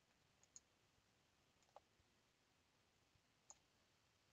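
Near silence with three faint, short clicks, about half a second, a second and three-quarters, and three and a half seconds in.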